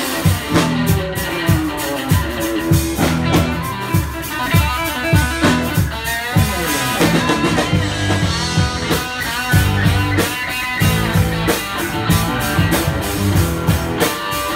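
Live rock band playing: two electric guitars, a bass guitar and a drum kit, with a steady drum beat under the guitars.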